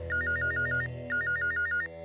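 Landline telephone's electronic ringer ringing twice. Each ring is a rapid warble between two high pitches lasting under a second, with a short gap between the rings.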